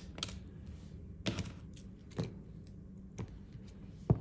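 Four light taps about a second apart: a clear jelly stamper being dabbed on a sticky cleaning pad to lift off leftover polish.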